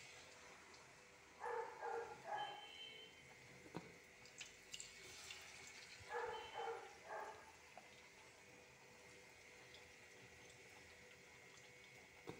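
An animal calling faintly: two groups of three short pitched calls, about five seconds apart, with a few faint clicks between them.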